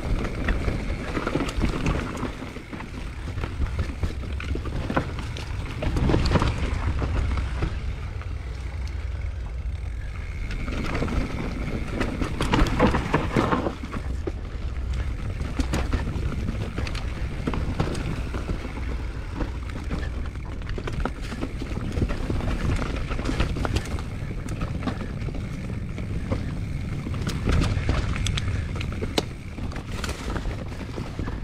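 Mountain bike riding fast down a dirt trail: a steady rolling rumble from the tyres over dirt and roots, with frequent clatters and clicks from the bike. It gets louder for a moment about six seconds in and again around twelve to thirteen seconds.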